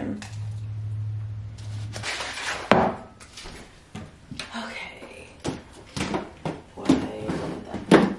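Wooden kitchen cabinet doors being opened and items handled. A sharp click comes a little under three seconds in, then a string of knocks and clatter, with a loud knock at the very end. A low steady hum runs through the first two seconds.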